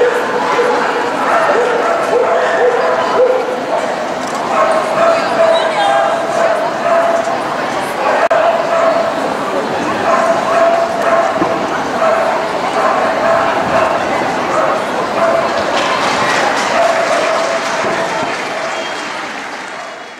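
Pomeranians yipping and whining over the steady chatter of a crowded indoor show hall, fading out near the end.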